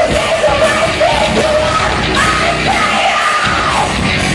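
Live heavy metal band playing loud, with distorted electric guitars, drums and a lead singer half-singing, half-yelling over them. The low end thins briefly about three seconds in.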